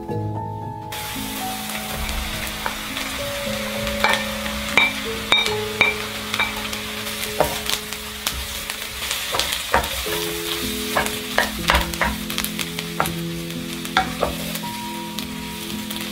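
Food sizzling in a frying pan, starting about a second in, with frequent clicks and scrapes of stirring through it. Background music plays throughout.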